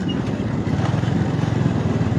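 Small motorbike engine running steadily at road speed, with an even low pulse.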